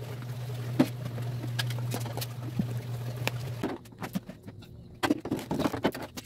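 Scattered light clicks and knocks of kitchen containers being handled, over a steady low hum that stops about two-thirds of the way in. Near the end come a cluster of louder knocks as plastic bowls and a cutting board are moved about on a stainless steel sink.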